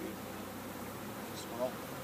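Honeybees flying around open hives, buzzing in a steady low hum, with a brief faint voice near the end.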